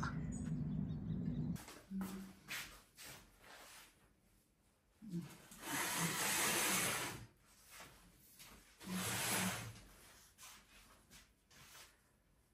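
Clothes rustling and small clicks and knocks as dry laundry is handled on metal drying racks, with two longer swells of rustling. A low steady hum cuts off after about a second and a half.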